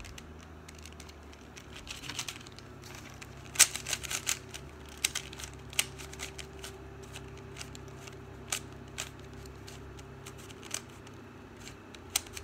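Plastic 3x3 puzzle cube being turned by hand, its layers clicking and clacking in irregular clusters, the loudest click about three and a half seconds in, over a steady low hum.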